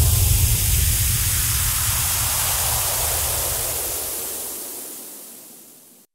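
The closing swell of an electronic music outro: a wash of hissing noise over a low bass rumble, fading away to silence by the end.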